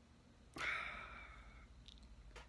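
A man's sigh: one breathy exhale that starts suddenly about half a second in and fades away over about a second.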